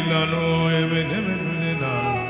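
Slow worship music: a low voice chanting on held notes, with brief slides in pitch about a second in, over sustained string-like tones.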